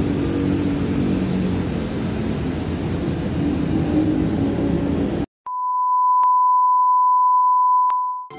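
A steady low rumble of railway-station background noise, which cuts off suddenly about five seconds in. A steady single-pitched test-tone beep follows: the tone that goes with TV colour bars, here an editing transition.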